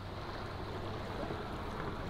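Steady rushing of a river's current.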